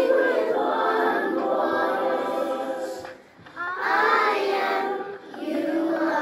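A group of children singing a song together in unison, with a brief pause about halfway through.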